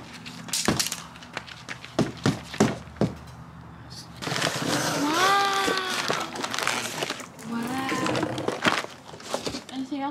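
Cardboard shipping box being torn and pulled open by hand: a string of sharp rips and knocks over the first few seconds, then a longer stretch of noise with a bending, wavering pitch in the middle, and a shorter one near the end.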